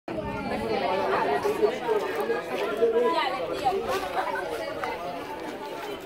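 Chatter of a group of teenagers talking over one another, with no single voice clear.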